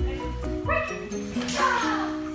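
Malamute–German shepherd mix dog vocalizing over background music: a short call about two-thirds of a second in, then a louder call that falls in pitch about a second and a half in.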